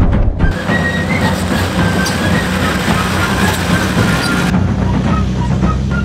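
Background music over the rumble and road noise of a Nissan Patrol ute driving on a gravel road. The noise is heaviest from about half a second in until a little before the end.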